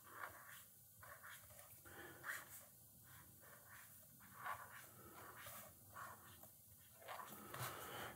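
Faint scratching of a brush pen's tip on a paper pad, in several short separate strokes as a word is lettered.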